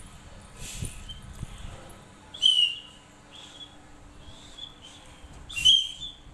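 Small plastic toy whistles blown in several short, high, breathy toots. The two loudest come about two and a half seconds in and near the end, with fainter toots between.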